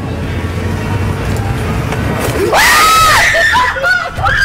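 Low city-street rumble, then about two and a half seconds in a woman's loud, high fright scream, its pitch arching up and down, followed by another shriek near the end.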